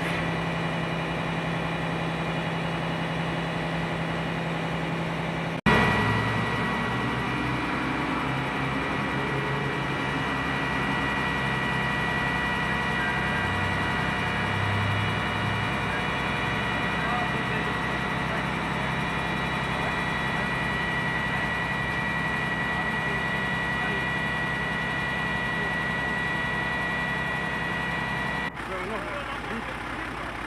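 Fire engine running steadily at idle, a continuous engine drone with a steady high whine over it. The sound changes abruptly about six seconds in and again near the end, where the recording cuts.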